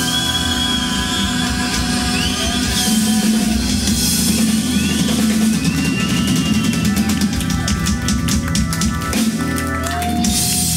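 Live rock band playing the instrumental end of a song, with electric guitar, bass, keyboard and drums. A run of rapid drum hits fills the last three seconds.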